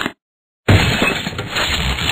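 Glass-shattering sound effect of a light bulb breaking: after a brief silence it starts suddenly about two-thirds of a second in and runs on as a dense crash of breaking glass.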